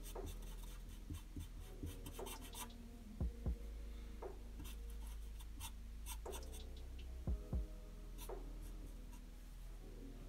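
Black felt-tip marker scratching on paper in short, irregular strokes as it shades in a dark patch of a drawing.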